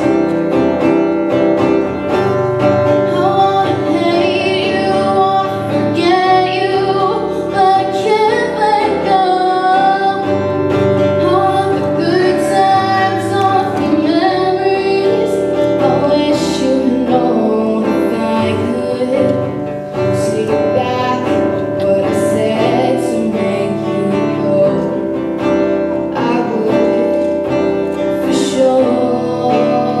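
A girl singing a song while strumming an acoustic guitar, her voice and guitar carrying steadily together.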